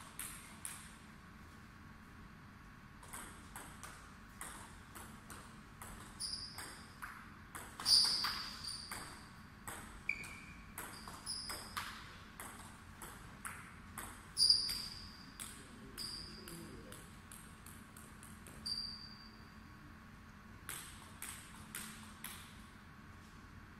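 A table tennis ball clicks back and forth between rackets and the table in quick rallies, many of the table bounces ringing briefly. Two hits are much louder than the rest, about a third and two thirds of the way through. After a short pause near the end, a few more clicks follow.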